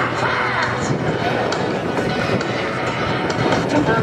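Steady engine drone of a USMC C-130 Hercules's four turboprops as it flies by overhead, with faint voices and music from a public-address system mixed in.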